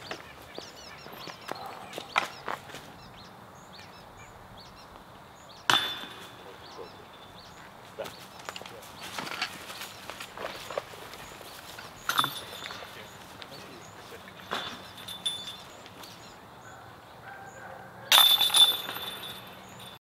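Putted golf discs hitting the hanging chains of a disc golf basket three times, about six seconds apart, each a sharp hit followed by a jingling chain rattle. The last one, near the end, is the loudest.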